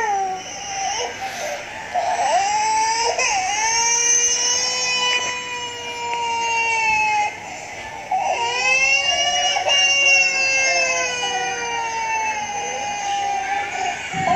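Cartoon crying sound effect: two long, high-pitched wails of about five seconds each, each sagging in pitch at its end.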